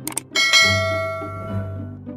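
Two quick mouse-click sound effects, then a bright bell chime that rings out and slowly fades, over background music.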